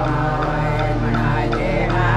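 Women singing a chant-like song in Yanyuwa, an Aboriginal Australian language, over a sustained low drone.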